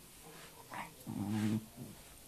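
A dog's short low growl lasting about half a second, with a brief higher sound just before it.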